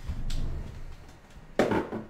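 Low thumps of handling in the first second, then one sharp knock or clatter about one and a half seconds in.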